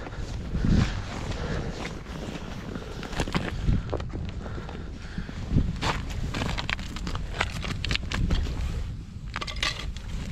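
Boots crunching through snow on frozen lake ice in an irregular run of footsteps.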